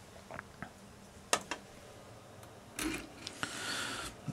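A few faint clicks and light knocks of small metal parts being handled while the clutch push rod and needle-bearing pressure plate are fitted, the sharpest click about a second and a half in, with a short scrape near the end.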